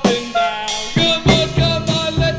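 Instrumental passage of a 1960s rock song: a drum kit beats under pitched instruments playing held, sliding notes.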